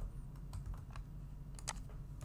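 Computer keyboard keystrokes, a few separate clicks with the clearest one near the end, over a steady low hum.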